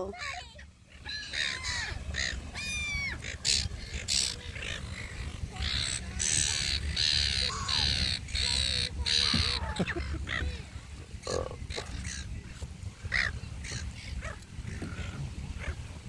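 A flock of silver gulls squawking, many short harsh calls overlapping, busiest around the middle, over a steady low rumble.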